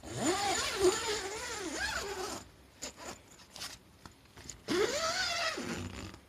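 Nylon tent door zipper being run in two pulls: a long one of about two and a half seconds, then a shorter one near the end, the pitch sweeping up and down with the speed of the pull.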